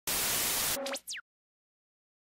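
Television static hiss for under a second. It is cut off by a short electronic blip: a low steady tone with a quick rising sweep, then a high falling sweep, like an old TV set switching off.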